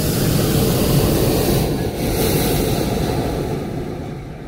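Hot air balloon's propane burner firing: a loud, steady roar that fades away over the last second or so.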